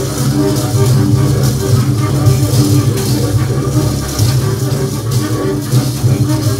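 Two double basses playing free improvisation together: a dense, steady low drone with short pitched figures above it and scratchy, rattling noise on top.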